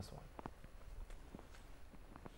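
Faint, irregular taps and scratches of a felt-tip marker writing on a whiteboard.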